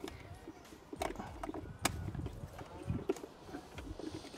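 Multi-pin wiring-loom connector being pushed onto an engine control unit: a few sharp plastic clicks and knocks as it is seated, the sharpest near the middle, over light handling noise.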